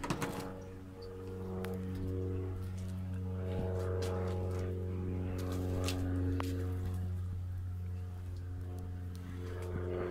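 A steady low droning hum with a row of overtones, swelling and easing slightly, with a few faint clicks.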